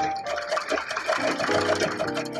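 A sewing machine stitching in a fast even rhythm, about seven stitches a second, over background music; the stitching stops about three-quarters of the way through and the music comes to the fore.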